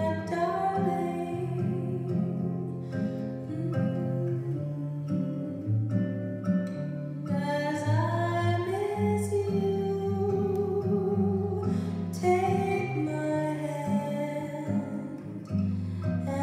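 Recorded music with a singing voice over plucked guitar and bass, played back through Harbeth P3ESR bookshelf loudspeakers driven by a McIntosh MC152 amplifier and picked up in the room.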